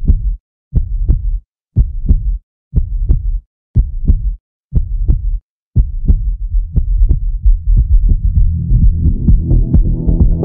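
Heartbeat sound effect from a film soundtrack: low double thumps, about one a second, with silence between them. From about six seconds in, the beats run together into a steady low pulse, which builds into electronic dance music as pitched tones come in near the end.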